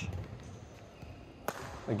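A badminton racket strikes the shuttlecock once, a single sharp crack about one and a half seconds in, over faint steady hall background noise.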